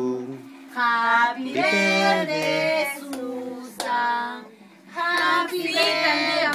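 A small group of people singing a birthday song together in long held notes, phrase by phrase, with a brief lull about four seconds in.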